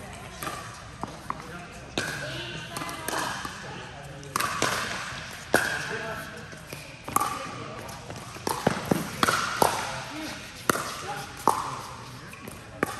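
Pickleball rally: paddles striking a hard plastic ball with sharp pops at irregular intervals, mixed with the ball bouncing on the court, each hit ringing on briefly in a large indoor hall. A quick burst of hits comes about two-thirds of the way through, as at a volley exchange at the net.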